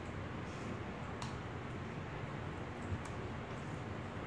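Computer keyboard keys clicking, a sharp click about a second in and a fainter one near the end, over low steady room noise.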